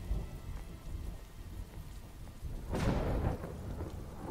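Rain falling steadily with a low rumble of thunder that swells about three seconds in: storm sound effects from an animated episode's soundtrack.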